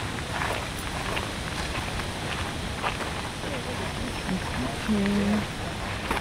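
Footsteps crunching on a gravel path, an irregular crackle over a steady noisy background, with a brief faint voice a few seconds in.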